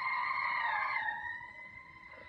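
Film sound effect of a car driving past, its motor made from children's screams mixed low, played from a TV: a steady high tone that swells, drops in pitch about a second in as the car passes, and fades.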